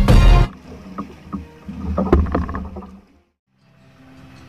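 Intro music ends about half a second in. Then water sloshes and splashes against the hull of a bamboo-outrigger fishing boat, with a low rumble and a few knocks, while a hooked swordfish is alongside. The sound cuts out a little after three seconds in.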